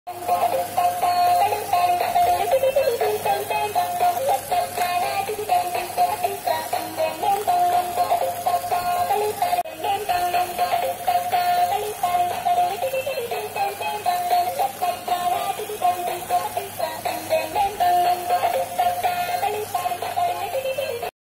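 Dancing robot toy playing its built-in electronic tune, a simple synthesized melody with a robotic voice.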